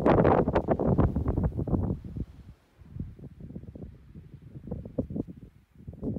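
Wind buffeting the microphone in irregular gusts, strongest in the first two seconds, then weaker and more scattered.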